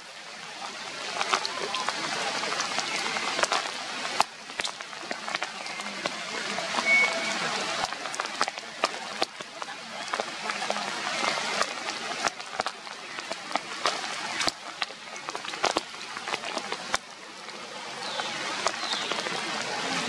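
Steady rain falling through tree foliage, with irregular sharp drop hits scattered through the hiss.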